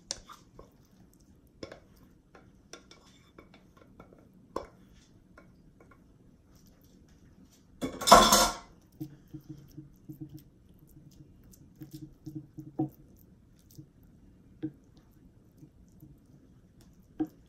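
A metal pot and spoon scraping as cauliflower mash is scooped out onto a casserole dish: soft scattered clicks and scrapes, with one loud clatter about eight seconds in.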